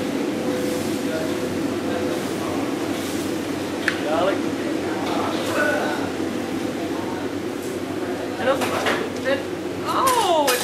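Steady hum of commercial kitchen equipment, with brief untranscribed voices now and then and a single sharp click about four seconds in.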